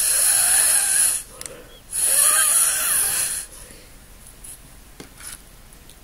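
Two long puffs of breath blown through a drinking straw, pushing a drop of watery watercolor paint across paper. The first lasts about a second, and the second starts about two seconds in and lasts about a second and a half.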